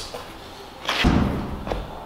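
A perforated stainless-steel false bottom dropping into a stainless mash tun and landing on its base with a single metallic thud about a second in, followed by a small knock as it settles.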